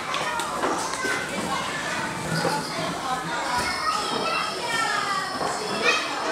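Children's voices and chatter, many at once, filling a busy indoor play room with hard echoing floors.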